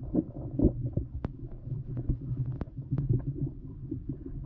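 Underwater sound through a submerged GoPro Hero8 Black's built-in microphone: a muffled low rumble of river water, broken by a handful of sharp clicks.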